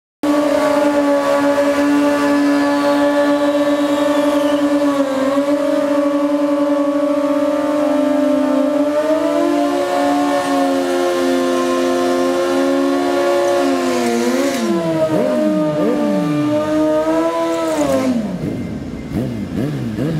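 Sportbike engine held at high, steady revs during a burnout, stepping up a little in pitch about halfway through. A few quick throttle blips come near three-quarters of the way, then the revs drop. In the last seconds, short rising and falling revs from more than one bike blipping their throttles overlap.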